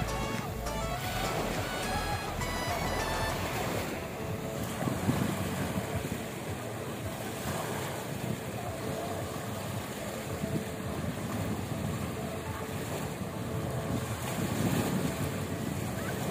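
Small sea waves breaking and washing up on a sandy shore, with wind on the microphone. Background music plays over the first four seconds or so, then stops.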